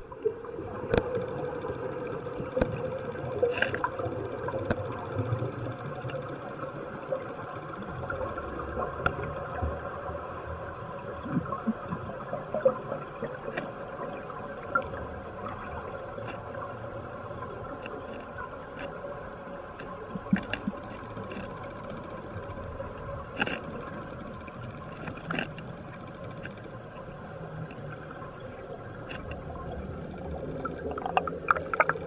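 Underwater ambience in a dive pool: a steady hum with a few held tones, scattered sharp clicks, and gurgling air bubbles that grow busier near the end.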